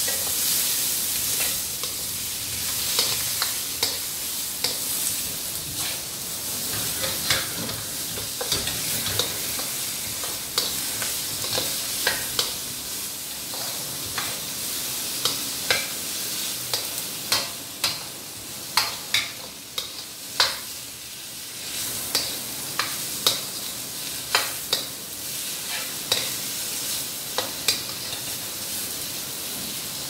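Vegetables sizzling as they stir-fry in a stainless-steel wok, with a steady hiss of frying. A spatula stirs them throughout, knocking and scraping against the wok in frequent irregular sharp clicks that are the loudest sounds.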